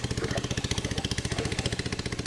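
Small boat engine idling with a steady, fast putter.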